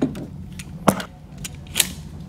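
Glock 19 pistol being loaded and handled: about five sharp mechanical clicks and knocks of magazine and slide, the loudest about halfway through.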